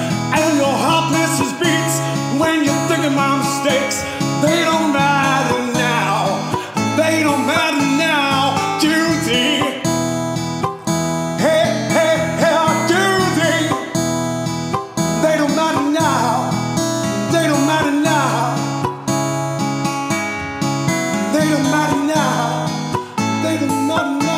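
Instrumental break in a song: acoustic guitar strumming, with a bending melody line over it.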